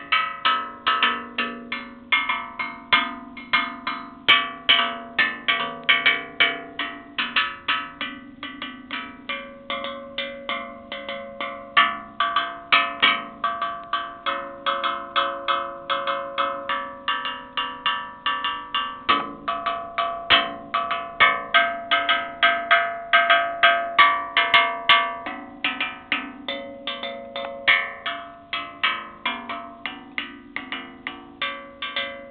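Fired-clay tongue drum, a bowl with tongues cut into its wall, struck with a stick: a steady run of short, pitched knocking notes at several pitches, about three strikes a second.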